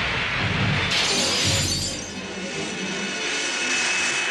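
Film sound effects of an explosion with crashing, shattering debris, a fresh crash about a second in that fades into a hiss. A thin steady high tone comes in near the end.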